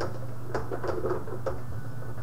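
Rod hockey table in play: several sharp irregular knocks and clacks as the rods are pushed and spun and the players strike the puck, over a steady low hum.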